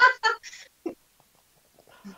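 A short burst of laughter: several quick, choppy pulses that die away within the first second.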